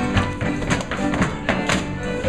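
A live contra dance band of fiddles, guitars, banjo and keyboard plays a dance tune, with sharp rhythmic strokes about three or four times a second.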